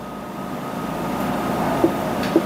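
A steady mechanical rumble with a faint whine through it, growing gradually louder, with a few faint short scratches of a marker on the whiteboard near the end.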